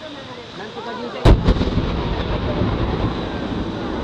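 An aerial firework shell bursts with one loud boom about a second in, followed by a couple of smaller cracks and a low rumble that echoes on for a few seconds.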